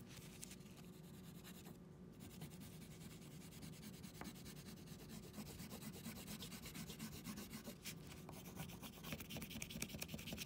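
An oil pastel rubbed hard back and forth across paper: faint, rapid scratchy strokes that grow a little louder near the end.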